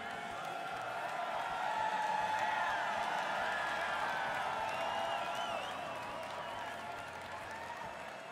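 Large stadium crowd waiting for a concert: many voices at once with scattered cheers, whoops and whistles, swelling about two seconds in and easing off toward the end.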